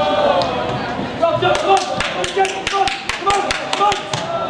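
Shouting voices on a football pitch during play, joined about one and a half seconds in by a fast, even run of sharp taps or claps, about five a second.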